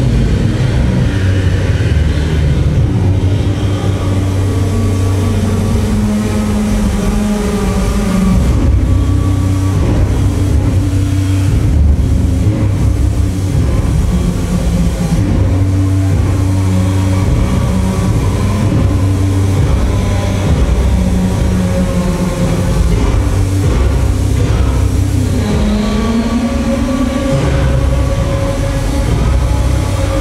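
Loud live experimental noise-drone music: a dense, heavy low rumble under held tones that shift in pitch and glide, one of them rising near the end.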